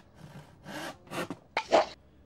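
Handsaw cutting through a wooden board in about four rasping strokes. The last stroke, near the end, is the loudest.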